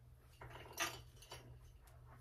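Bedding being handled: soft rustling as a comforter is smoothed on a bed, with one louder brushing sound just under a second in and a couple of light knocks after it.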